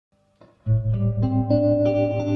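Fender Stratocaster electric guitar with Fred Stuart pickups, played clean with reverb through a Custom Audio Amplifiers OD100 amp. After a brief silence, a low note sounds about two-thirds of a second in. Single notes are then picked over it about every third of a second, ringing into each other.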